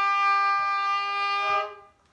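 Fiddle holding one long bowed note, steady, that dies away near the end as the bow comes off the string: the closing note of the tune.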